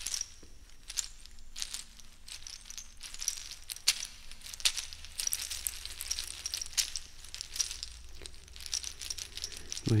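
Sparse, irregular clicks and rattles fading in, with a faint thin high ringing among them. A low voice starts humming right at the end.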